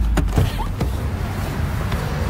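Car cabin noise: a steady low engine and road rumble with a rushing hiss, and a few light knocks in the first second.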